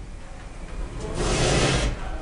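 Elevator doors sliding: a brief rubbing, sliding noise about a second in, lasting under a second.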